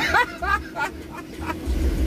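A man laughing in short bursts inside a car cabin, over the car's low, steady rumble.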